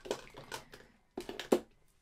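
A few light clicks and taps of plastic makeup packaging being set into and lifted from a plastic drawer organiser.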